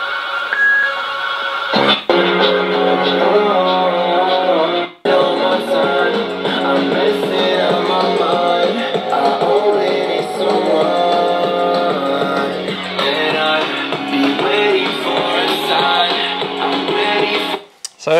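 Guitar music playing through the small built-in speaker of a Begode electric unicycle, thin, with little bass and nothing above about 4 kHz: not awesome quality. It cuts out for a moment about five seconds in, then carries on.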